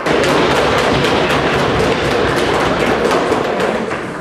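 Audience applauding in a hall: many hands clapping densely and steadily, starting abruptly and fading near the end.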